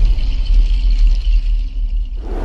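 Loud, deep rumbling drone with a hissing high shimmer over it: a cinematic logo-intro sound effect, easing off slightly near the end.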